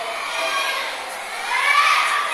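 Background babble of many children's voices talking and shouting at once, swelling louder near the end.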